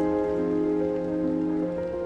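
Background music of slow, sustained chords that change every half second or so.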